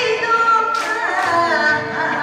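A woman singing Kawachi ondo in the Yanre-bushi style into a microphone, her voice sliding and bending through a long, ornamented melodic phrase.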